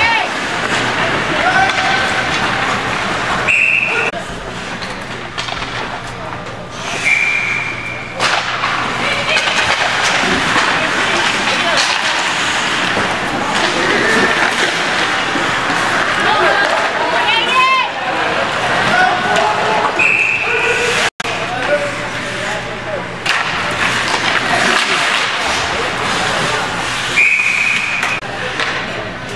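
Ice hockey game in a rink: voices of players and spectators over the general noise of play, with short whistle blasts, four in all, the last near the end as play stops.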